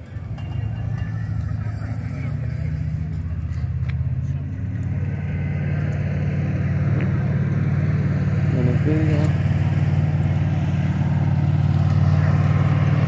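A motor vehicle's engine idling close by: a steady low hum that gets louder about halfway through and then holds.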